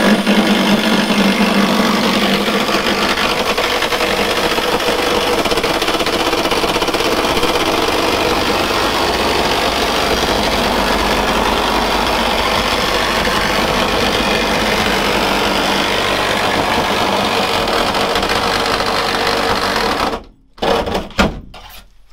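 A cordless reciprocating saw cutting through the sheet-steel side panel of a VW T5 van to open a window aperture. It runs steadily for about twenty seconds, stops suddenly, and a few short knocks follow.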